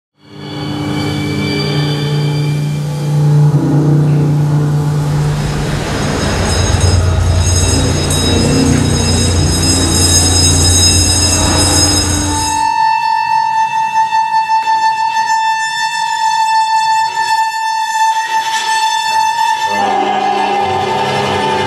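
Contemporary chamber-ensemble music of sustained held chords. From about five seconds in, a bass drum head is rubbed with a pad, giving a deep steady drone under a noisy wash. A little past the middle the texture changes suddenly to a single high held tone that pulses in loudness.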